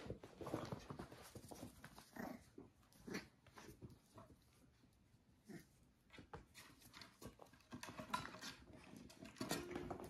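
Six-week-old Cavalier King Charles Spaniel puppies playing with their mother dog: quiet dog noises and scuffling that come in short, irregular bursts.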